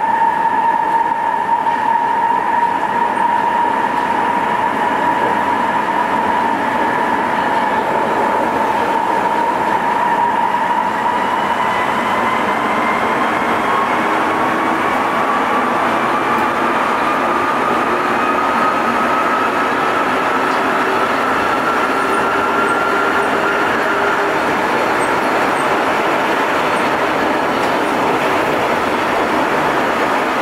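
Interior running noise of a Sapporo Namboku Line 5000-series rubber-tyred subway car under way, with a steady whine that slowly rises in pitch as the train gathers speed.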